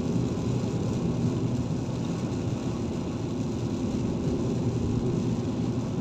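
Steady road noise inside a car driving on a rain-soaked highway: a low hum from the engine and tyres, with a fainter hiss above it.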